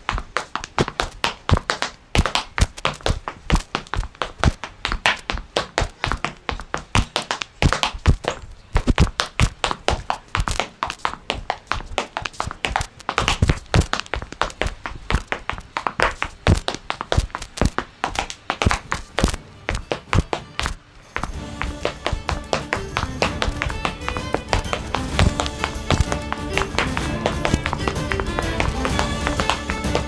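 Irish dance hard shoes striking a hard floor in quick rhythmic taps and clicks, close-miked from a microphone on the dancer's sock. About two-thirds of the way through, music comes in under the taps, which carry on.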